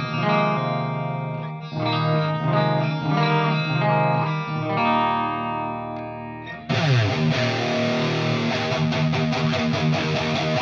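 Electric guitar played through a Line 6 Helix multi-effects board with a doubling effect, sustained chords and notes ringing out. About two-thirds in, the tone switches abruptly to a brighter, fuller strummed sound as a different patch is selected.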